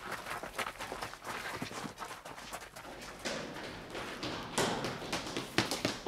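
Hurried footsteps of several people running: a string of quick, irregular steps, as a radio-play sound effect.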